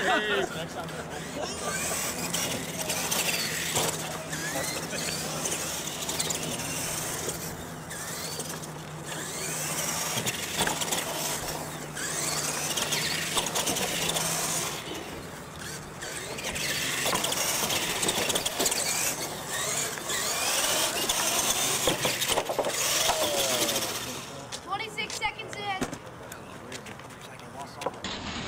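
Radio-controlled monster trucks driving and revving over turf and ramps, their motors and gears whining up and down in pitch. The noise swells and fades every few seconds as the trucks accelerate and back off.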